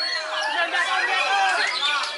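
Many overlapping voices shouting and chattering, with caged songbirds singing among them.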